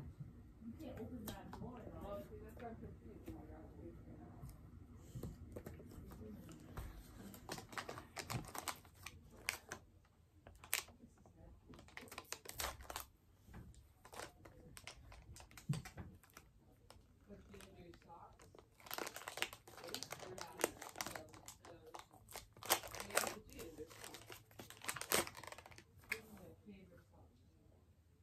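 Packaging crinkling and rustling as small gifts are unwrapped and handled, in bursts of sharp crackles that grow denser and louder in the second half.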